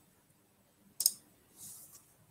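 A single computer mouse click about a second in, followed by a brief soft hiss, over quiet room tone.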